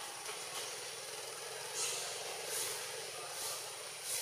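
Steady outdoor background noise: a low hum under a thin, high, steady whine. From about two seconds in, soft high swells come roughly every three-quarters of a second.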